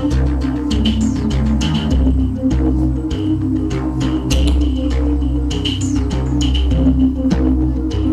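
Live band music: low sustained synth and bass notes changing in steps, a drum struck at a steady beat, and electric guitar.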